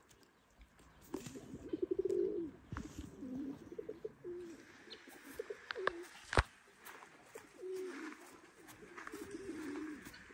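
Domestic pigeons cooing, a run of low warbling coo phrases one after another, with one sharp knock about six seconds in.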